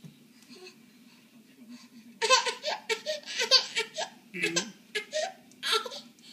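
Quiet for about two seconds, then a run of high-pitched laughter in short bursts.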